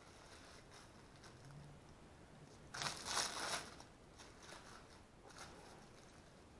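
Faint rustling and scraping of hands working silicone over a titanium plate, with one louder, rough scrape of under a second midway.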